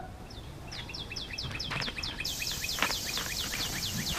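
A bird calling: a fast, even run of short downward-sliding chirps, about five a second.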